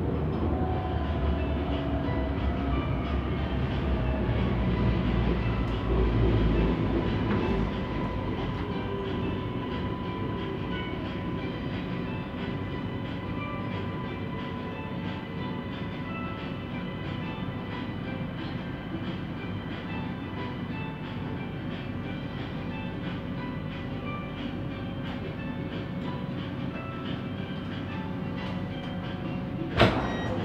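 Siemens Inspiro metro train running on the rail, heard inside the driver's cab as it slows into a station: a steady rumble with electric humming tones that fades gradually.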